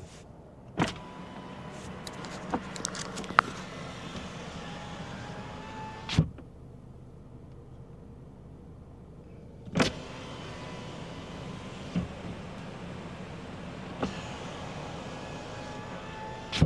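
Car power window working, heard from inside the cabin. It opens with a knock about a second in and lets in steady outside traffic noise, runs up and shuts with a thump about six seconds in, leaving the cabin much quieter, then opens again near ten seconds and the traffic noise comes back. The opening and shutting shows how well the closed cabin keeps out traffic noise.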